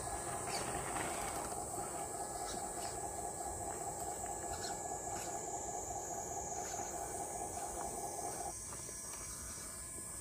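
Electric motor and geartrain of an RC rock crawler whining steadily as it strains up over a tree root, the whine stopping about eight and a half seconds in. Insects buzz steadily in the background.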